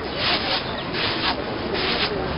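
Long wooden pestle pounding in a wooden mortar: three short strokes, about three-quarters of a second apart.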